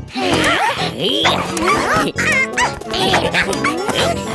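Cheerful cartoon background music with short, high, wordless character vocalizations gliding up and down in pitch throughout.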